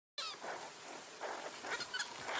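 Short, high-pitched animal cries that fall in pitch, the loudest right at the start and a few fainter ones later, from the small animals in a mongoose's attack on a young hare.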